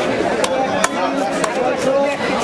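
A knife chopping through fish on a wooden block: a few sharp chops, two of them close together in the first second, over voices talking.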